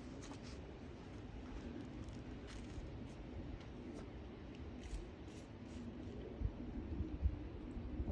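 Low wind rumble on the microphone with scattered faint clicks and scratches from a stencil and a plastic spray bottle being handled.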